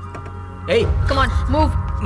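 Film soundtrack: a sustained music score with a low rumble underneath. Loud shouting cuts in about two-thirds of a second in.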